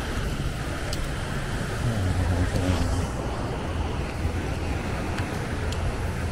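Beach ambience: a steady low rumble of wind on the microphone under the hiss of surf, swelling slightly about two seconds in.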